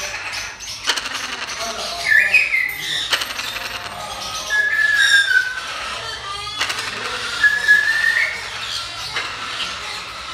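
Parrots whistling: several clear whistled notes, one falling about halfway through and one rising near the end, with a few sharp clicks in between.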